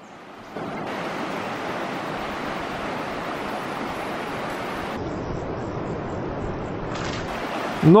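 Steady, even rushing of a flowing river's water, starting about half a second in and continuing without a break.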